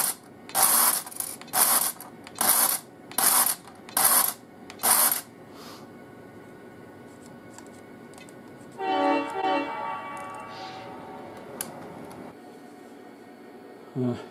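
Operating milk car on track power at a full 18 volts, flinging milk cans onto the platform: a run of about seven loud buzzing pulses, roughly one every second, each with the clatter of a can landing. The pulses stop about five seconds in. A few seconds later a pitched, horn-like tone sounds for about a second and a half.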